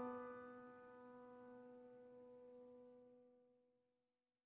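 A piano chord in the background music ringing out and slowly dying away to nothing near the end.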